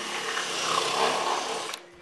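A power tool running with a steady hiss, stopping abruptly shortly before the end.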